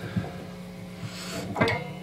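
Steady hum and faint hiss from an electric guitar amplifier with the strings left unplayed. There is a soft click about a quarter second in and a couple more near the end, from hands touching the strings.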